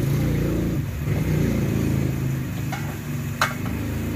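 A motor engine running with a low hum whose pitch rises and falls, and one sharp click about three and a half seconds in.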